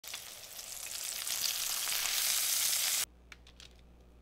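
Bacon frying in a cast-iron skillet: a steady sizzling hiss with fine crackle that grows a little louder, then cuts off suddenly about three seconds in. A couple of faint clicks follow.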